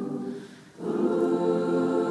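A roomful of amateur voices singing together in long held notes. The sound dips away briefly about half a second in, as for a breath, then the group comes back in on a steady sustained chord.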